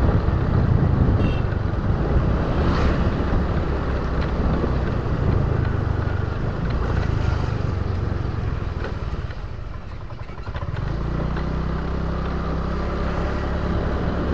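Motorbike engine and wind noise on the microphone while riding at low speed. About ten seconds in the sound eases, then settles into a steadier low engine note.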